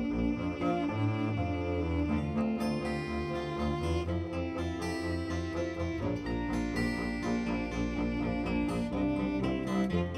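Bluegrass string band playing an instrumental passage: fiddle, acoustic guitar, mandolin and a bowed upright bass together, with no singing.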